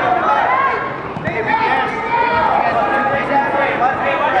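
Several people's voices shouting and talking over one another: coaches and spectators calling out around a wrestling mat.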